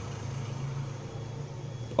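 Steady low background hum with faint noise and no distinct events.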